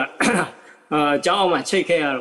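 A man talking in Burmese, in short phrases with brief pauses.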